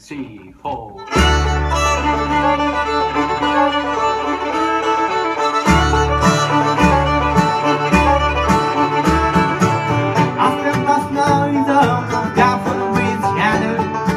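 Bluegrass string band playing live, with banjo, acoustic guitar and mandolin over a bass. The music comes in about a second in with a long held low note, then moves to a bass line of separate notes.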